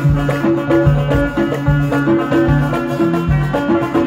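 Live band music played without singing: a steady drum beat under a repeating melody of plucked strings.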